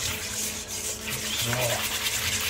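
A small wire whisk beats thick, set cream in a stainless steel bowl in rapid, steady strokes, the wires scraping and rubbing against the metal. The gelatine-set panna cotta cream is being stirred smooth again.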